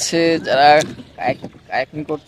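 A man's voice speaking in Bengali, close to the microphone, in several short phrases.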